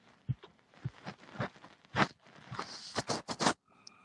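A string of irregular sharp clicks and scraping rustles, coming thicker and faster with a hiss in the second half, like something being handled close to the microphone. Just before the end the clicks stop and a faint steady tone begins.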